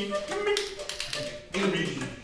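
Wind quintet playing a contemporary piece in stops and starts: sharp taps and clicks among short, breathy low notes and voice-like sounds.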